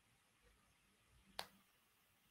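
Near silence, room tone, with one sharp click about one and a half seconds in.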